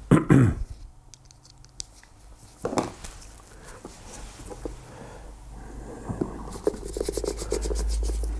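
A throat clear near the start, then faint scratching and small clicks of a micro screwdriver tip working in the punched brogue holes of a leather shoe toe cap, picking out solvent-softened old polish. Near the end the strokes come quicker and louder, in a dense run of short scratches.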